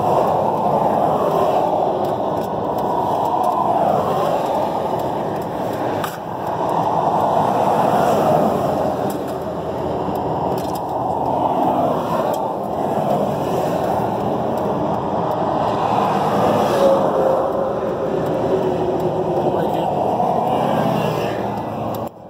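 Steady rushing motor-vehicle noise that swells and fades several times.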